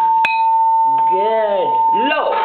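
A steady high-pitched tone runs throughout. There is a sharp click a quarter of a second in, and a short wordless voice sound, rising and falling, about a second in.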